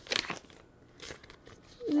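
Sheet-mask pouch crinkling as it is handled, in two short rustles with a few faint ticks.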